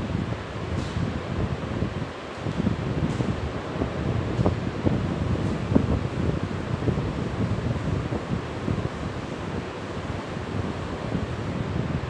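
Steady low rumbling noise with a few faint clicks, and no speech.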